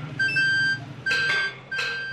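Electronic beeping: a single high tone sounding three times, each beep about half a second long, over steady street noise.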